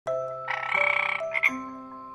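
A frog croaking: a rapidly pulsed call about half a second in that lasts most of a second, then a shorter call just after. It sounds over soft music with held chiming notes.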